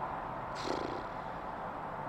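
Pause in a man's talk: steady low background noise, with one short creaky vocal rasp from him a little over half a second in.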